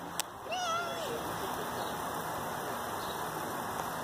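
Lawn sprinkler spraying water in a steady hiss, with a single click just after the start. About half a second in, a young girl gives one short, high voiced call that rises and falls.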